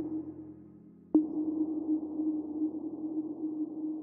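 Ambient background music: a struck electronic note at the start and another about a second in, each ringing on as a steady low tone.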